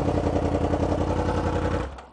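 A Kawasaki Z1000's inline-four engine idling steadily with an even pulse. The sound cuts off suddenly near the end.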